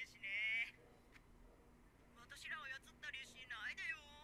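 Faint, thin, high-pitched dialogue from the anime episode playing in the background, in three short phrases.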